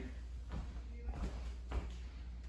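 Footsteps and shuffling across a wood floor, a few soft knocks over a low steady hum.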